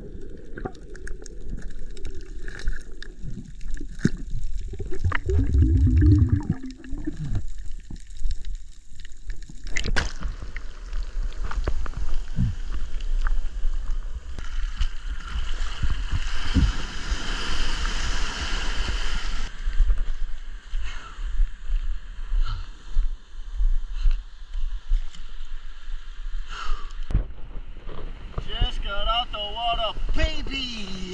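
Action camera underwater: muffled water noise with a loud low rumble about five to seven seconds in. The camera then breaks the surface into the surf, and waves wash and slosh loudly around it, loudest midway through.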